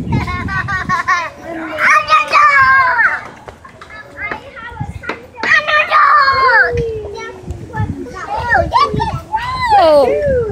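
Young children's high-pitched voices at play: squealing and calling out without clear words, loudest in bursts about two seconds in, around six seconds with a long falling squeal, and again near the end.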